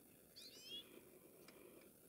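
Near silence, broken about half a second in by a faint, brief bird call: a few quick, high chirps, each falling in pitch.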